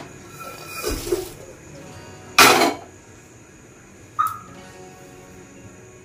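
Dry-roasted peanuts tipped from a pan onto a cotton kitchen towel and handled in it: a few short noisy sounds, the loudest about two and a half seconds in.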